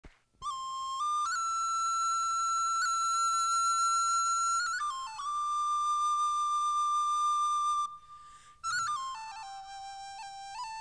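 Solo high-pitched wind instrument playing a slow melody of long held notes, each change of note marked by a quick grace-note flick. It starts about half a second in and pauses briefly for breath shortly before nine seconds in.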